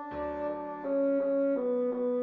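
Notation-software playback of a bassoon melody: a few held, reedy notes, the pitch stepping down about one and a half seconds in, over a low backing part.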